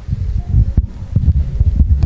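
Handling noise on a handheld microphone: irregular low thumps and rumble as the microphone is picked up and moved.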